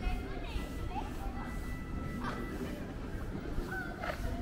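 Pedestrian-street ambience: indistinct voices of passers-by over a steady low background hum, with no single sound standing out.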